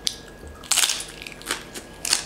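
Crispy roast pig skin crunching as it is bitten and chewed: a loud crunch less than a second in, then a few short, sharp crunches.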